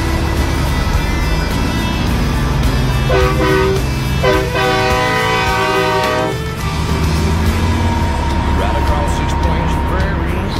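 Semi-truck air horn sounding twice, a short blast and then a longer one of about two seconds, over the steady drone of the truck's diesel engine and road noise.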